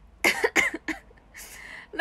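A young woman choking and coughing: three quick coughs in the first second, then a longer breathy cough.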